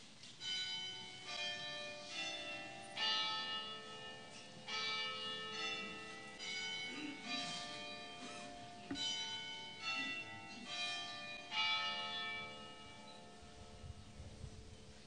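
Church bells chiming a slow sequence of different notes, about one strike a second, each note ringing on and overlapping the next like a carillon tune.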